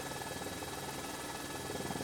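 Steady, fairly quiet drone of an aircraft's engine, heard from inside the cabin.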